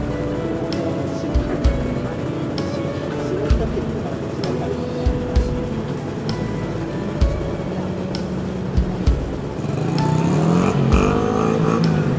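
Background music with a steady beat. About ten seconds in, an engine revs up underneath it.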